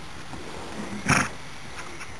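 Hoofbeats of a ridden Tennessee Walking Horse on a dirt track, with one short, loud burst of breathy noise about a second in.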